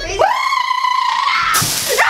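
A high, drawn-out vocal cry that rises at the start and is held for about a second and a half. It is followed near the end by a short burst of hiss.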